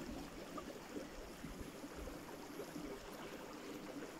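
Faint, steady trickle of running water in a shallow rocky stream.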